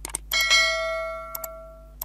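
A bright bell-chime sound effect from a subscribe-button animation, struck once about a third of a second in and ringing down over about a second and a half. Short clicks come just before it and again partway through.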